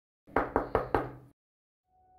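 Four quick knocks on a wooden door, evenly spaced at about five a second.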